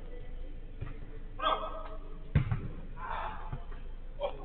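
A football kicked and bouncing on artificial turf: one sharp thud of a kick a little past halfway, with a couple of fainter ball thumps, among players' shouts.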